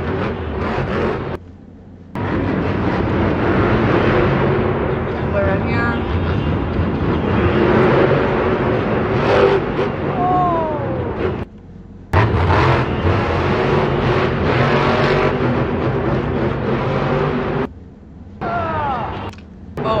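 A monster truck's engine revving hard through a freestyle run, heard on a phone recording from stadium stands along with crowd noise and shouting voices. The sound cuts out briefly three times.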